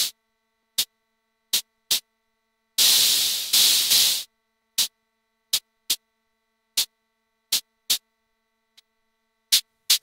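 Gray noise from a Steady State Fate Quantum Rainbow 2 analog noise module, gated by an attack-release envelope and VCA into short hi-hat-like hits in an uneven rhythm. About three seconds in come two longer washes of noise.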